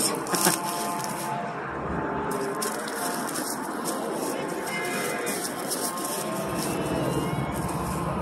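Distant interstate traffic as the convoy's trucks and cars pass: a steady rush with faint, drawn-out tones over it.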